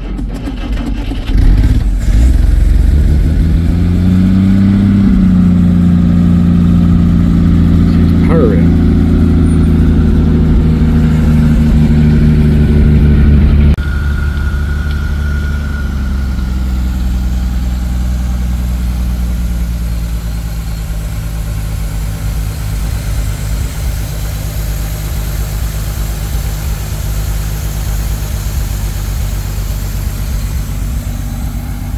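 Packard Clipper engine running. The revs climb and are held at a fast idle, then drop abruptly about 14 seconds in to a slower, steady idle.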